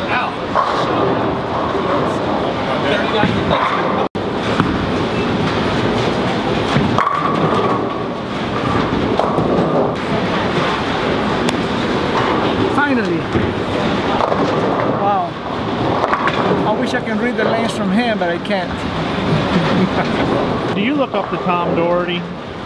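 Busy bowling-alley din: many overlapping voices chatting, over the rumble of bowling balls rolling down the lanes. The sound cuts out for an instant about four seconds in.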